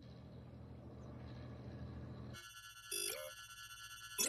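Animated sci-fi targeting-display sound effects. A faint low hum gives way, about two and a half seconds in, to a steady high electronic tone with a short chirp that rises in pitch.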